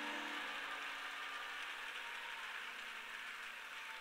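Steady, even hiss-like noise of a large hall, slowly fading, with a faint low tone dying away in the first half second.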